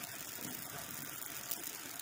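Hand-held gas torch flame hissing steadily against a bluestone slab during flame finishing, with faint crackles and a small pop about a second and a half in as hot flakes of bluestone pop off the heated surface.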